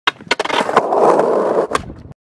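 Skateboard sounds: a sharp clack of the board, a couple of quick knocks, about a second of wheels rolling on hard ground, and one more clack near the end.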